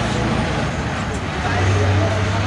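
Road traffic going by, with the low steady engine drone of a heavy lorry coming in about one and a half seconds in.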